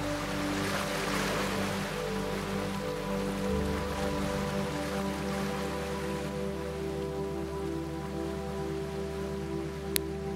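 Slow ambient background music of held, steady tones over a soft wash of water noise that swells about a second in; the lowest note changes about three and a half seconds in.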